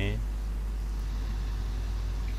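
A steady low hum with no other events, just after a man's voice trails off at the very start.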